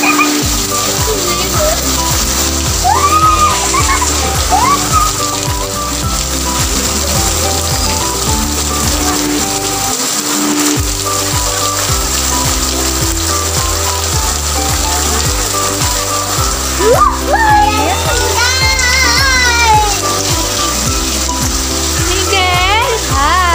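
Heavy rain falling steadily on roofs, under a background music track with held notes. A voice rises and falls near the end.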